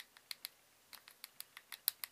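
A small plastic tube of fine glitter tapped and shaken against a plastic measuring spoon to get the glitter out: about ten light, uneven clicks, the loudest near the end.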